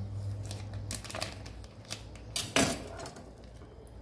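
Kitchen knife slitting open plastic vacuum packaging on a wooden cutting board: scraping and rustling with a few sharp clicks and clatters, the loudest about two and a half seconds in.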